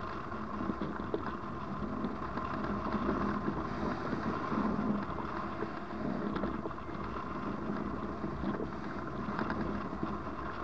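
Steady rush of air past a hang glider in flight, wind buffeting the microphone of the glider-mounted camera.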